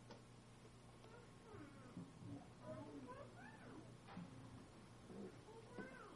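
Faint voices with high, sliding pitch, in the pause between numbers, over a steady low hum.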